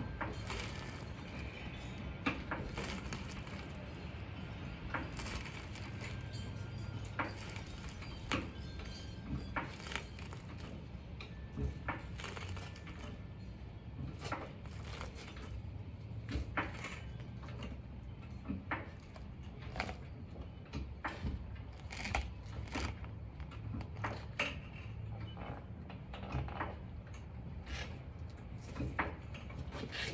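Scattered, irregular light clicks and metallic knocks over a low steady hum, from hand work with a floor jack and tools around a car.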